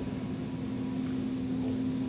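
A quiet, steady low hum with faint background hiss.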